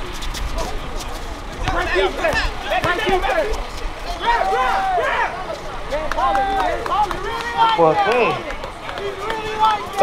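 Many voices talking and calling out over one another, with overlapping shouts from players and spectators around an outdoor basketball game and no single clear speaker.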